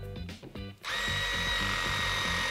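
A battery-powered cable crimping tool's motor starts about a second in and runs steadily with a high whine as it presses a copper lug onto stranded copper cable. Background music with a low beat plays underneath.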